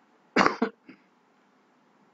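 A person coughing once, a short sharp burst with a smaller one just after.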